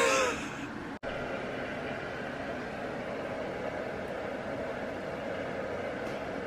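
A woman's laugh trails off, then after an abrupt cut a steady, even hiss with a low rumble continues unchanged.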